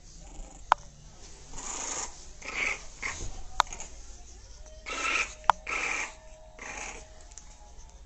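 A bulldog breathing noisily in a series of short bursts, about half a second each. A few sharp clicks fall between the breaths.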